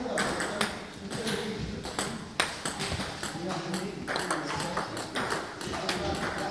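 Table tennis ball clicking sharply, again and again and at uneven intervals, as it strikes the bats and the table during serve-and-receive practice.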